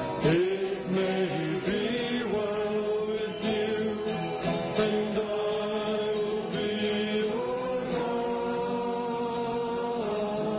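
Slow sung music, chant-like, with long drawn-out notes that shift pitch every second or two.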